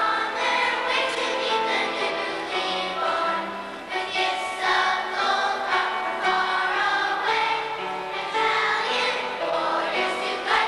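Children's choir singing together, holding and moving between sustained notes.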